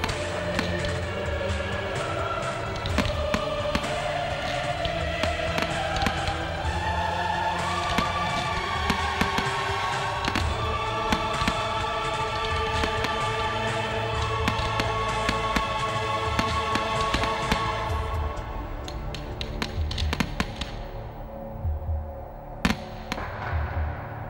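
Fireworks going off over music: many shell bursts and crackles ring out across a melodic music track. Near the end the music thins out and only a few separate bangs are left.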